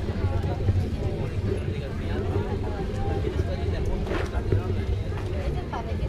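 Indistinct voices of vendors and shoppers at an open-air street market, over a steady low rumble.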